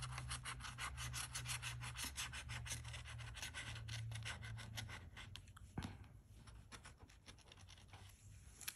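Bottle opener scraping the scratch-off coating from a lottery ticket in rapid, repeated strokes. The strokes thin out and fade after about five seconds.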